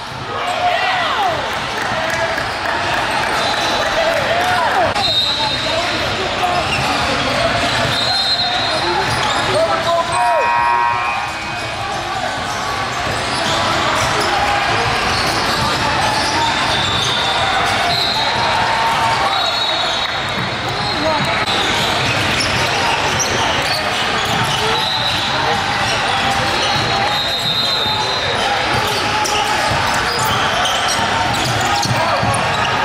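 Live sound of a basketball game in a large gym: a ball dribbling on the hardwood court under indistinct voices from players, benches and spectators, echoing in the hall, with short high squeaks now and then.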